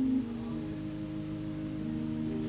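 An organ holding soft, sustained chords, the notes stepping to new chords a couple of times.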